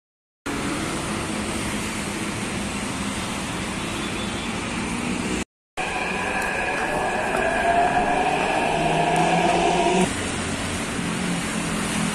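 Steady street traffic noise. After a cut, a Hyderabad Metro train alongside a platform gives a whine that rises gently in pitch as it pulls away, then cuts off suddenly about ten seconds in.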